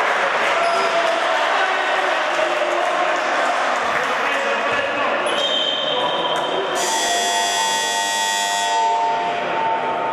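Voices and shouts of players and spectators echoing in a sports hall during a futsal match. A thin high tone comes in about five seconds in, and a louder, shrill tone sounds for about two seconds shortly after.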